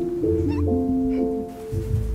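Background music: held keyboard notes changing in steps over a low bass, with a brief high, wavering gliding sound about half a second in.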